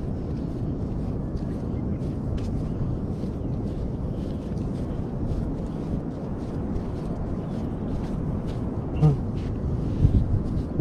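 Steady low outdoor rumble with faint scattered ticks, and a brief voice sound near the end.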